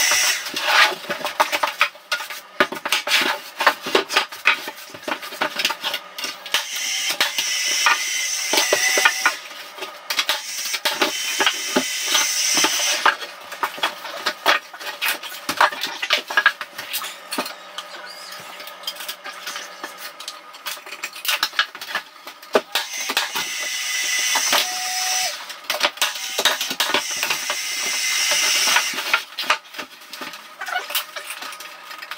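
Carpentry on a softwood stud frame: lengths of timber knocked, dropped and shifted, with several harsh two-second bursts of a tool working the wood.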